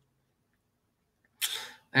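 Near silence, then about a second and a half in a short, sharp breath from a man with no voice in it, just before his speech resumes at the very end.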